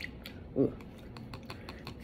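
Faint, irregular light clicks, about five a second, as a paper straw is moved and lifted in an iced glass of boba tea, knocking against ice and glass.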